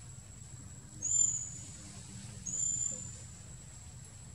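Two short, high-pitched whistled animal calls about a second and a half apart. Each rises quickly and is then held for about half a second, over a steady high, thin whine.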